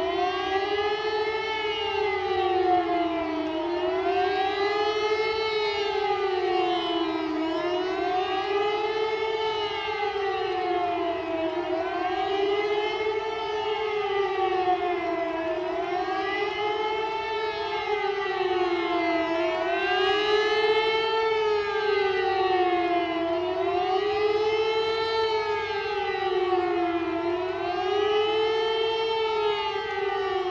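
Air-raid siren wailing, its pitch rising and falling in a slow cycle about every four seconds, with a steady tone held underneath.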